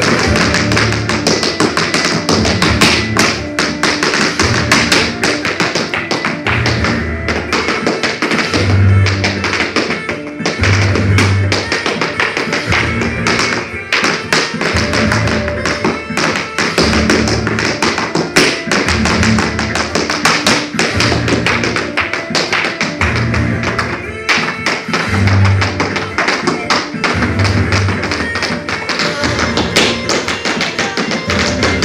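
Irish dance hard shoes striking the floor in fast, rhythmic taps over recorded dance music with a steady low beat.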